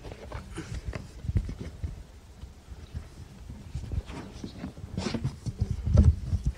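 Scattered light knocks and handling noises as objects are set back in place by hand.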